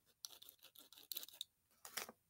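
Faint, irregular small clicks and light scraping from a vintage 1/24 scale slot car chassis being handled by hand.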